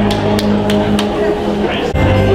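Live dance-band music: a held chord with bass sounds for about the first second, marked by four sharp clicks about three a second, then thins out before the band comes back in near the end. Voices murmur underneath.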